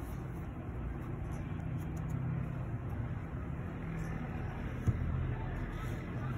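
Steady low background rumble with no words, and one short knock about five seconds in as a canvas shoe is set down on a wooden floor.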